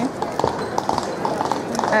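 Horses' hooves clip-clopping on stone paving, a run of sharp, irregular clicks, over the voices of passers-by.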